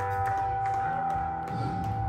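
Amplified electric guitar and bass ringing between songs: one high note is held steady throughout, while low bass notes change about a second in.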